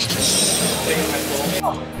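Water gushing from an outdoor tap and splashing over a muddy running shoe as it is rinsed. The hiss starts suddenly and cuts off about one and a half seconds in.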